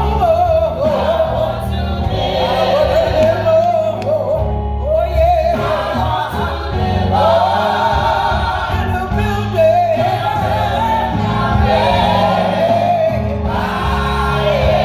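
A women's gospel vocal group singing live into microphones, lead and backing voices together, over steady low instrumental accompaniment.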